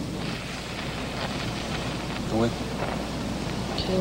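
Rough, steady outdoor noise of wind on the microphone over a low hum, with a brief voiced sound, like a short word or murmur, about two and a half seconds in.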